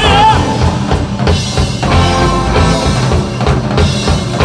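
Live rock band playing an instrumental passage on drum kit, electric guitar and bass balalaika, loud and steady. A held sung note ends just after the start.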